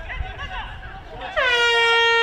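End-of-quarter horn at a field hockey match, signalling the end of the third quarter as the clock reaches zero. It starts abruptly about a second and a half in, dips in pitch briefly, then holds one loud steady note.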